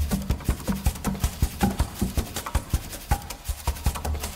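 Percussion music: a quick, even run of sharp drum or wood-block strikes, about five a second, without a bass beat under them.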